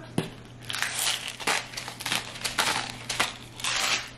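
Hand-turned spice mill grinding salt and pepper into the soup: a run of irregular gritty crunches, densest near the end.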